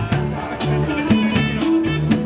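Rock band music with bass, guitar and drums, with a steady beat and cymbal strokes about once a second.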